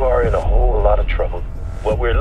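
A man's voice speaking over a police car's two-way radio. The voice is thin and cut off above the midrange, with a steady low hum underneath.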